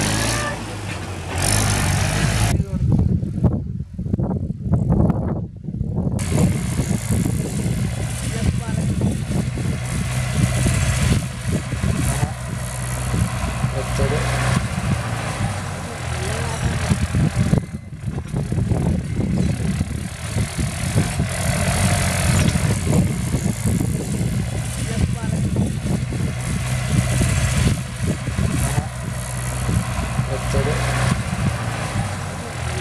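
Mahindra 475 DI tractor's diesel engine running steadily as the tractor pulls a loaded trailer, with the sound changing abruptly at edits.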